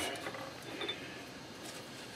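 Faint mechanical sounds as a lathe's four-jaw chuck, with the workpiece in it, is turned slowly by hand.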